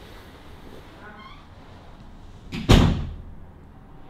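A single loud thump about two and a half seconds in, dying away over about half a second, with a faint brief squeak a second in.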